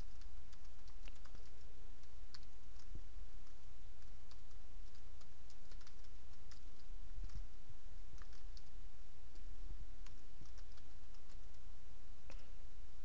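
Computer keyboard keystrokes, faint and irregular, as code is typed, over a steady low hum.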